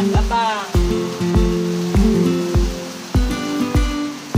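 Background music with a steady beat, a low kick about every 0.6 seconds under held chords, with a brief high sliding vocal phrase at the very start.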